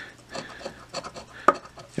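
A coin scratching the coating off a scratch-off lottery ticket in a series of short rasping strokes, with one sharper tick about one and a half seconds in.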